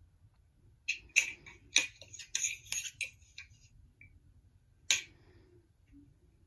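Hands handling a picture book and its small removable figure: a quick run of clicks and rustles about a second in, then one sharper click about five seconds in.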